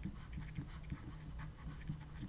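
Faint, irregular scratching and tapping of a stylus writing on a tablet or pen display, over a low steady hum.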